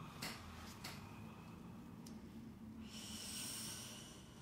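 A woman's loud breath through the nose about three seconds in, after a couple of faint clicks. She is breathing through the pain of a PDO thread being put into her face, and it sounds sore.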